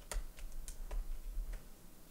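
A few faint, sharp plastic clicks and taps as cables are unplugged from the side ports of a laptop and handled on the desk.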